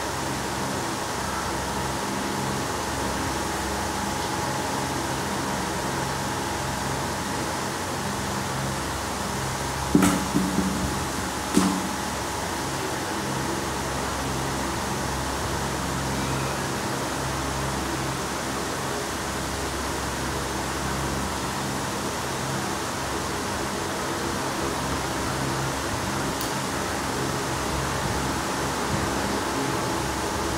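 Steady mechanical hum with a constant whirr, like a running fan, and a few knocks about ten seconds in, with one more a second and a half later.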